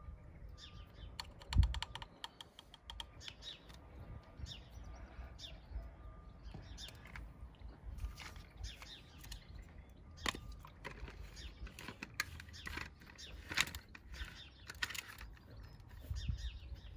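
Light plastic clicks and knocks from handling a shampoo bottle and a hand-pump foam sprayer as its pump head is fitted, with a quick run of clicks near the start and one dull thump about a second and a half in.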